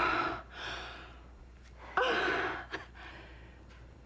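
A woman gasping: a breathy intake at the start, then a sharper voiced gasp with a falling pitch about two seconds in.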